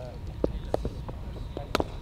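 Cricket balls knocking off bats and the ground at net practice: three sharp cracks, the loudest near the end, with a few fainter knocks between.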